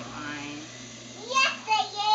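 A young child's wordless voice: a low held sound, then two short high squeals that rise sharply in the second half.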